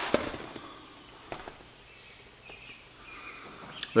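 A cardboard box handled in the hands: one sharp tap just after the start, then a few faint ticks and rustles over a quiet room.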